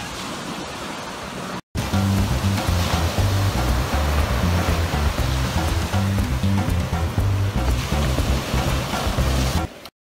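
Surf washing up on the beach for about a second and a half. After a brief cut to silence, louder upbeat Latin-style background music with a bouncing bass line plays, stopping just before the end.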